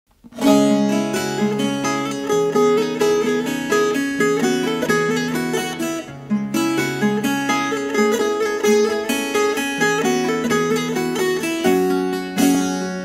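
Instrumental opening of a Turkish folk song played on the bağlama, the Turkish long-necked lute: a quickly plucked melody over a sustained low drone, with a short break about six seconds in.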